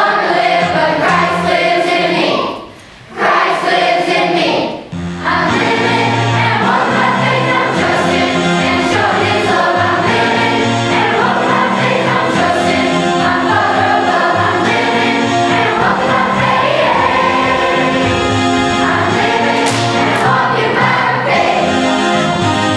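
Children's choir singing a song with musical accompaniment, with a short break in the music about three seconds in before it picks up again with a steady bass line.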